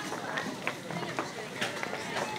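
Indistinct background voices in a busy shop, with short clicks and rustles from a handheld camera being moved about.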